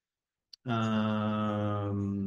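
A man's voice holding one long chanted tone at a level pitch. It starts about half a second in, just after a faint click.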